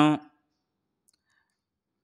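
A man's voice ends a spoken phrase about a third of a second in, then near silence with one faint click about a second in.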